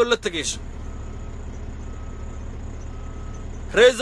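Steady low rumble of a vehicle's running engine heard inside the cab, with three faint, short high beeps about a second apart, like a reversing alarm.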